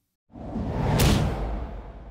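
A whoosh transition sound effect that swells over about half a second to a sharp hit about a second in, then fades away.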